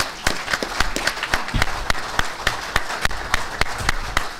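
Audience applauding, with many individual hand claps standing out.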